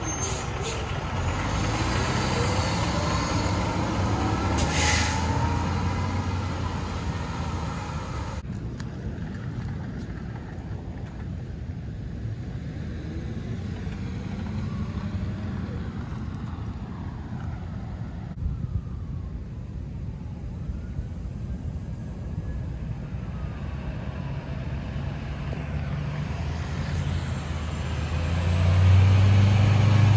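Diesel fire engine and ambulances driving slowly through an intersection one after another, engines running, with no sirens. A short hiss of air brakes comes about five seconds in, and the last ambulance's engine is loudest near the end.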